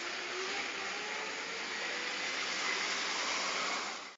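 A steady, even rushing noise with no speech, ending abruptly near the end.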